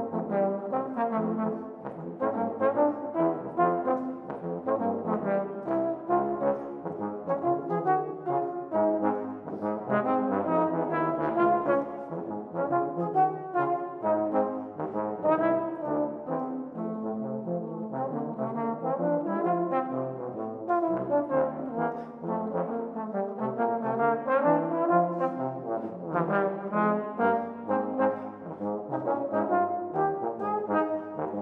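A tenor trombone and a bass trombone playing a jazz duet together, two lines of constantly changing notes.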